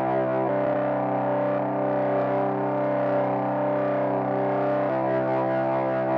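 Generative hardware synthesizer jam on a Volca Modular, Volca Keys and Cre8audio East Beast: a sustained, distorted drone chord at an even level. The upper notes shift pitch about half a second in and shift back near the end while the low notes hold.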